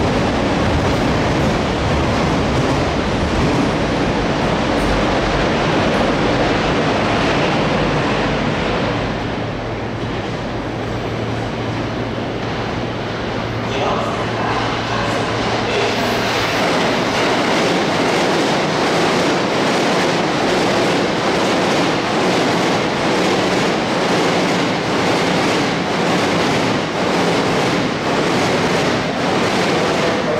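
Sotetsu electric commuter train pulling out over the station's points, its wheels running on the rails with a steady rail noise. A low steady hum joins partway through.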